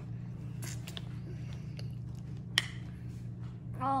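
Quiet room tone with a steady low hum, a few faint ticks in the first second and a single sharp click about two and a half seconds in.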